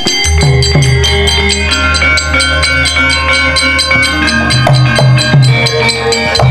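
Javanese gamelan ensemble striking up: drum strokes on a steady beat over ringing metallophone notes and a low sustained bass tone, starting about a quarter second in.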